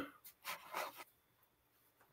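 A few faint, short rustles and scrapes of the camera being handled as it is moved lower, then near silence.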